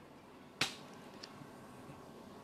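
A single sharp click about half a second in, followed by a much fainter tick, over low room noise.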